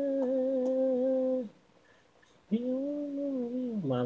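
Unaccompanied singing voice holding a long steady note that stops about a second and a half in. After a pause of about a second, a second held note begins and bends downward near the end as a lower note comes in.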